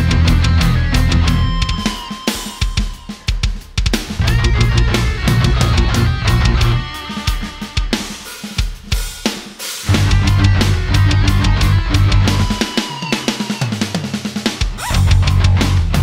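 Heavy instrumental progressive rock with a full drum kit (bass drum, snare, cymbals, hi-hat), bass and guitar, built on diminished and whole-tone scales. The heavy low end drops out three times in short breaks before the full band comes back in.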